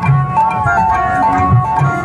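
Processional music: hand-beaten two-headed barrel drums keep a low, driving beat under a bright, high melody line of short held notes, with one sliding note falling just under a second in.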